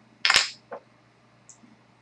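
A single sharp click from the glass gin bottle as its screw cap is opened, followed by a couple of faint small knocks.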